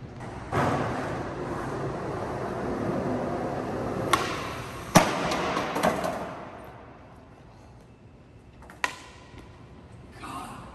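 Skateboard wheels rolling on a hard stone floor. A pop is followed about a second later by a loud slam as board and skater come down hard off a fifteen-stair set. The board clatters and rolls away, and there is one more sharp clack near the end.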